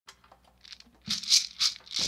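A shaker rattled in a quick rhythm, faint at first and louder from about a second in, opening a background music track.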